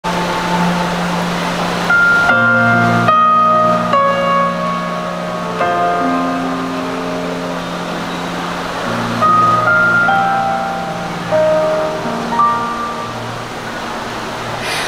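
Instrumental intro of a slow ballad's backing track: a slow melody of held notes over a steady low sustained tone, played over a PA loudspeaker.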